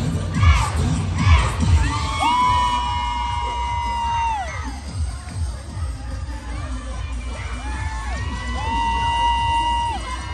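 Crowd cheering and children shouting, with long held high-pitched screams that drop in pitch as they end, one about two seconds in and another near the end. Routine music with a heavy beat is under it, strongest in the first two seconds.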